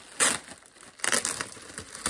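Clear plastic wrapping around a new handbag crinkling as it is handled and pulled from its box, in two bursts about a second apart.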